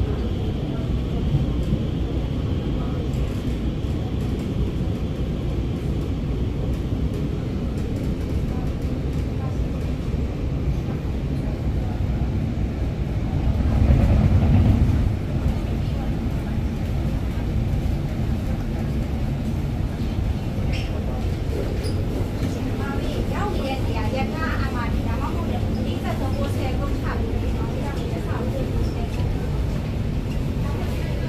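Ride noise inside an Alstom MOVIA R151 metro car running into a station and slowing to a stop: a steady low rumble from the running gear, with a louder swell about halfway through.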